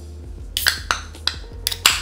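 Fingers working the pull tab of an aluminium beer can: several small clicks, then near the end the can cracks open with a short, sharp pop and a good hiss of escaping carbonation.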